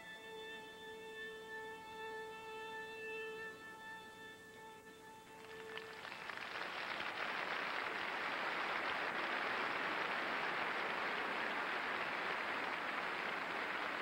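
Closing bars of figure-skating program music, long held violin notes, which end about five and a half seconds in as audience applause swells and then holds steady.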